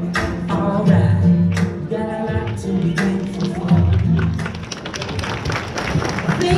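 A sung pop song with a backing track and a strong bass line, played over the hall's sound system.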